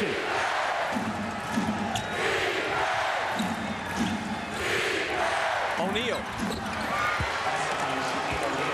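A basketball being dribbled on a hardwood court during live play, over steady arena crowd noise, with a commentator's voice now and then.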